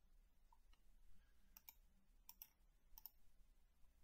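A few faint computer mouse clicks, some in quick pairs, over near-silent room tone.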